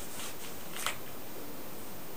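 Massage hands moving over the body, making faint rustles with one sharp, short click about a second in, over a steady background hiss.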